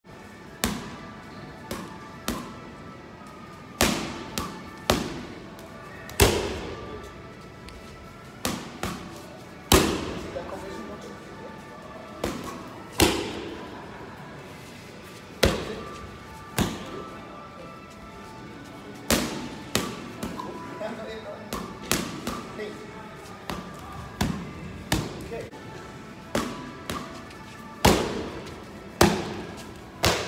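Boxing-gloved punches and shin kicks landing on handheld strike pads: dozens of sharp smacks in short combinations, each with a brief echo from the hall.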